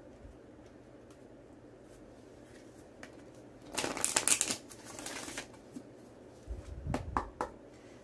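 Oracle cards being shuffled by hand: soft ticking, then a loud papery riffle about halfway through that lasts under two seconds. Near the end come a few low knocks and clicks as the deck is handled.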